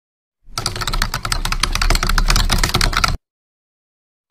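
Keyboard typing sound effect: a fast, dense run of key clicks that starts about half a second in and cuts off suddenly a little after three seconds.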